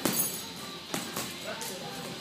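Boxing gloves landing punches in close-range sparring: two sharp smacks about a second apart and a lighter one after, over background music.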